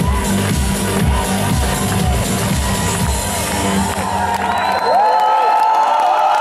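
Live pop-schlager band playing the song's closing bars with a steady beat. About five seconds in the drums and bass stop, leaving a held high note over crowd cheering.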